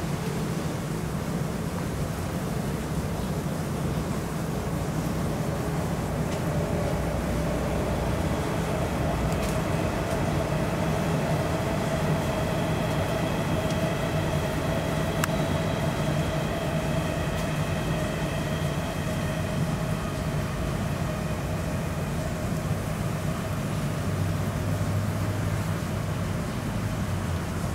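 Steady rush of rain falling on pool water over a low hum, with a distant passing vehicle's drone that swells and fades in the middle.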